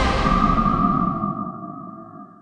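Electronic music sting for a TV programme's title card, fading out to leave a single held tone that slowly dies away.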